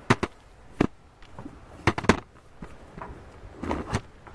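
A string of sharp, irregular knocks and bumps, about six strikes with a cluster just before the end, from climbing on a backyard playset while handling the camera.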